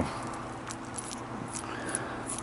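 Faint, light metallic clinks of cleaned tapered roller bearings being handled in the hand, a few scattered ticks over a low steady shop background.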